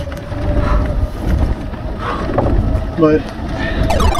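Golf cart driving over a bumpy dirt trail: a steady low rumble of ride and wind noise with a thin steady whine from the drive.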